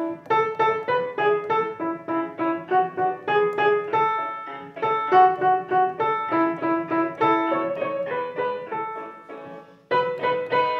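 Upright piano played: a simple melody of separate notes, a few a second, in short phrases. The last notes ring and die away near the end.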